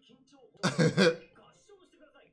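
A man's short laugh, two quick loud bursts just over half a second in, over faint dialogue from the episode.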